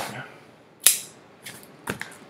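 Hands handling a cardboard shipping box and its paper label, with a short sharp scrape about a second in, a fainter one, and another just before the end.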